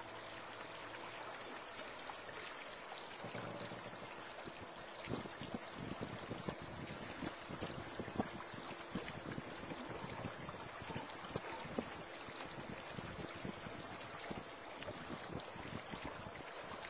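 Water rushing and splashing against the hull of a small boat under way, a steady rush broken by irregular small splashes, with wind buffeting the microphone.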